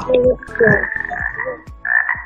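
Jungle-themed background music from a Wordwall quiz game, with frog croaks in it.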